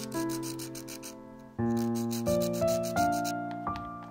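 Slow piano music playing chords, with a fast, even, scratchy rubbing over it that stops near the end.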